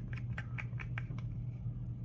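Light clicks and crackles of plastic being handled with a wooden craft stick, a quick run of about five a second that thins out after the first second.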